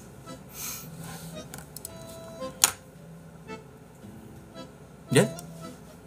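Soft background music with long held notes, a sharp click about two and a half seconds in, and a short questioning 'ye?' from a man near the end.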